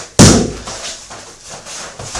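A kick landing on a kickboxing trainer's pads: one loud, sharp smack just after the start that fades within about half a second.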